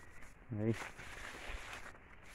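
One short spoken word, then faint rustling and a few soft low thumps of footsteps as someone walks through tall maize plants.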